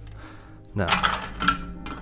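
Hard plastic model-kit parts clicking and clattering as the magnetized turret and cannon pieces are lifted off a Baneblade tank model, with a sharp click about a second and a half in.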